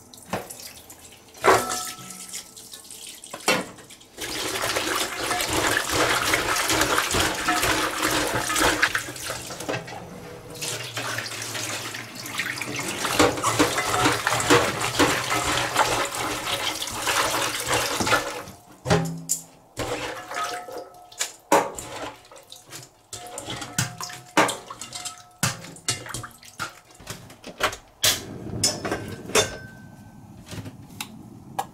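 Tap water running steadily into a stainless steel bowl in a steel sink while edamame pods are rubbed and rinsed in it by hand. The water stops about two thirds of the way in, and scattered metallic clinks and knocks of the bowl and dishes follow.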